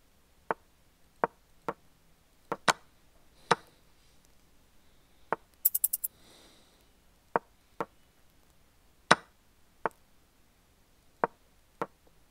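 Chess.com move sounds during a bullet game: short wooden knocks of pieces being placed, coming irregularly and quickly as moves are traded, about fifteen in all. Just before halfway, four rapid ringing clicks in a row, followed by a brief hiss.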